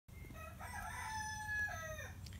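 A rooster crowing once: a single long call of about a second and a half that drops in pitch at the end.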